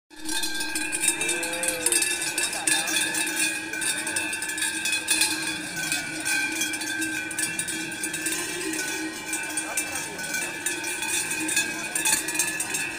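Many cowbells clanging together without a break, a dense ringing jangle, around Hérens cows fighting in the ring.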